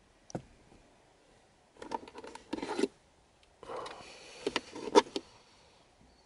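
Carpet insert being pulled out of a plastic center-console cup holder: two stretches of rubbing and scraping with several sharp clicks, after a single click near the start.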